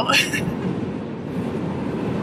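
Steady road and engine noise inside the cabin of a moving car, an even low rumble, with the tail of a spoken word at the very start.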